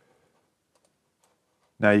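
Near silence, with a few faint computer mouse clicks, then a man starts speaking near the end.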